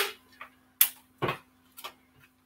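Handling noises at a desk: a brief louder rustle at the very start, then four short clicks and knocks about half a second apart.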